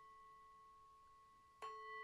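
A faint, steady ringing tone that fades slowly. About one and a half seconds in, a sharp onset brings it back louder.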